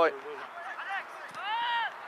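Sideline shouting at a soccer game: a short loud 'ouais' at the start, then a long high-pitched shout that rises and falls near the end.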